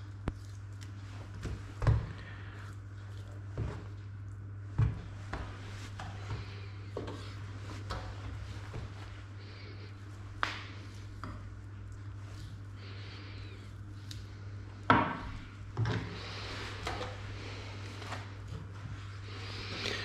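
Boning knife cutting and scraping through pork shoulder on a cutting board, with the meat rubbing and about half a dozen sharp knocks of the knife or meat on the board, over a steady low hum.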